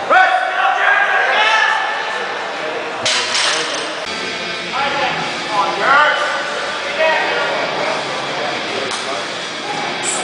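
Raised human voices, shouting and calling out in a large hall, in two stretches, with a sudden sharp noise about three seconds in.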